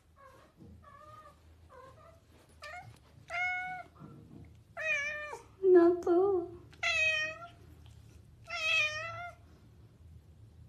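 A domestic cat meowing repeatedly: short, faint meows at first, then louder, longer ones from about three seconds in.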